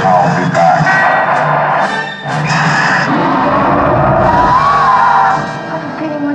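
Loud soundtrack music playing over a montage of movie clips on a theater screen.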